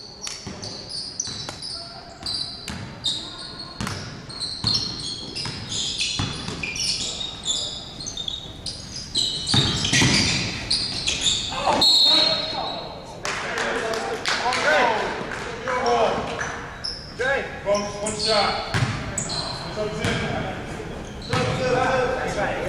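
Basketball game sounds in a large, echoing gym: a ball bouncing on the hardwood floor, sneakers squeaking as players cut, and players shouting to each other, with the voices heavier in the second half.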